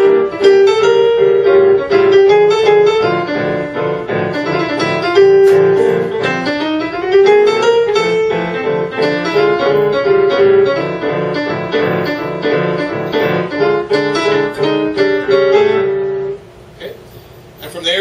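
Grand piano played solo in a swinging jazz style: a melody with improvised inner chords over a steady beat. The playing stops about a second and a half before the end.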